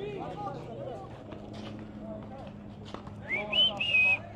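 Distant voices of players and onlookers calling out across an outdoor court, with a steady low hum underneath. A louder, high-pitched call comes near the end.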